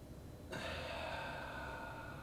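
A man's long, breathy exhale with no words, starting about half a second in and slowly fading.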